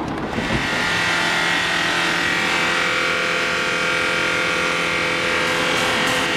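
Car burnout: the engine is held at high, steady revs while the drive wheels spin against the road, starting just after the beginning.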